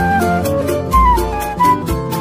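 Instrumental choro from a regional ensemble: a quick melodic lead running in short stepwise notes over guitar accompaniment, with deep surdo beats about every two seconds and the steady jingling strokes of a pandeiro.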